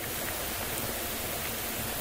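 Steady, even hiss of background noise, with no distinct events.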